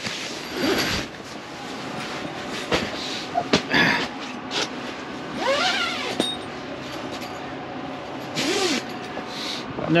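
Steady rushing noise of a Zero Breeze Mark II battery-powered compressor air conditioner running inside a canvas tent. Tent fabric is handled as the door flap is pushed open in the first second, and there are a few brief clicks and knocks.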